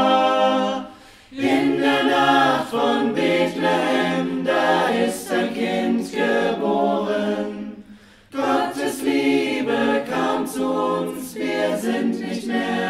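Mixed SATB choir singing a cappella in several-part harmony, with two short breaks between phrases, about a second in and again near eight seconds.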